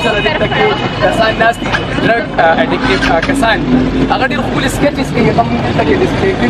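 Speech: a man talking continuously, with outdoor street noise behind him.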